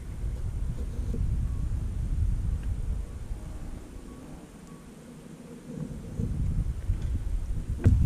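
Wind buffeting the microphone: a low rumble that rises and falls, easing off for a couple of seconds in the middle.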